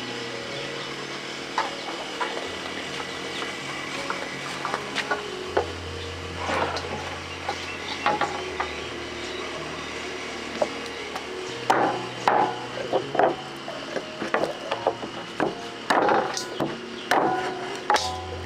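Cleaver chopping raw chicken on a round wooden chopping block: irregular sharp knocks that come thicker in the last third, over soft background music with steady held notes.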